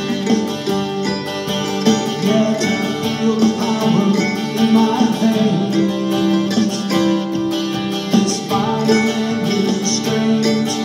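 Acoustic guitar strummed with a mandolin playing alongside, and a man singing over them in a folk-country song.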